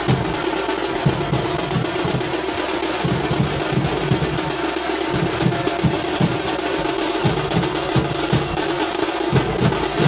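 Drums beating in a festival street procession: low drum strokes come several times a second, unevenly, over a dense, continuous wash of sound.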